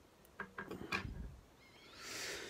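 Small fly-tying scissors snipping off the waste end of tying thread at the hook: a few short, sharp clicks about half a second to a second in, with light handling noise.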